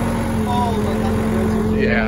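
Backhoe loader's diesel engine running steadily under load in first gear, heard from inside its cab.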